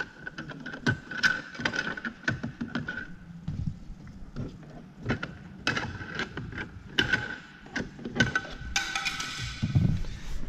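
Hard plastic trim cover being prised and worked off a car's rear door panel at the pull handle, giving many irregular plastic clicks and knocks. The cover is stiff and hard to release.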